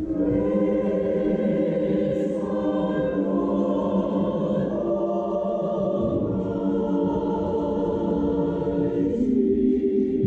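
Church choir singing together in held, sustained chords that change from one to the next.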